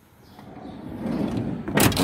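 Minivan sliding side door rolling along its track with a rising rush, then shutting with a loud thud near the end.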